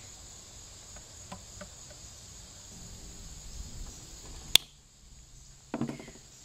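Crickets chirring steadily in the background, with light handling noise. About four and a half seconds in there is a single sharp click, and a few soft knocks follow near the end.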